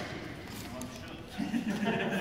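A person talking, starting about one and a half seconds in, after a quieter stretch with a few faint clicks.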